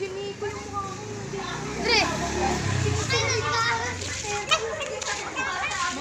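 Several children talking and calling out over one another, with a high rising cry about two seconds in.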